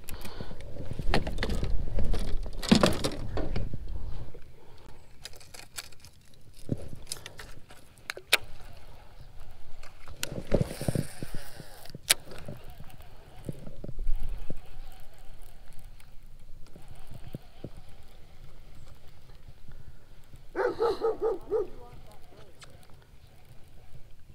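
Baitcasting rod and reel being handled and fished from a kayak: scattered clicks and knocks with heavier handling rumble in the first few seconds, and a short hissing rush about ten seconds in.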